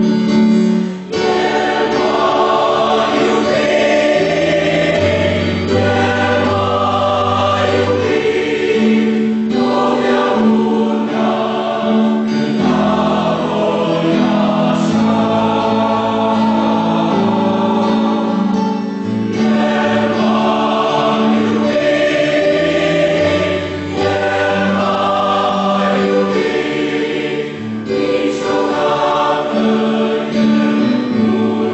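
Mixed choir of men's and women's voices singing a hymn in parts, with short breaks between phrases.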